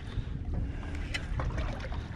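Low, steady rumble of wind on the microphone and water moving around a small boat, with a few faint clicks about a second in.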